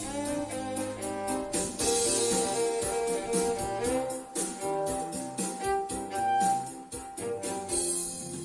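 Violin played with a bow, a melody of held and gliding notes over a recorded accompaniment with a steady beat.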